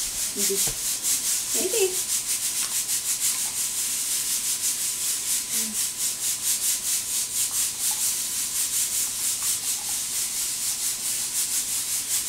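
Dog panting steadily: a quick, breathy rasp repeating about five times a second.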